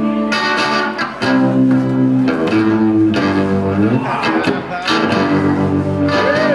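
A small live band playing: strummed guitar with fiddle, bass and drums.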